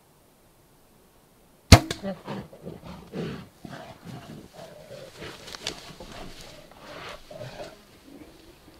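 A bow shot at a black bear: one sharp, loud crack of the released string and arrow nearly two seconds in. It is followed by irregular rustling and knocking as the bear moves off, and a short laugh.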